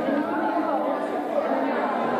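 Several women chatting at once in a large hall, their voices overlapping into an indistinct babble at a steady level.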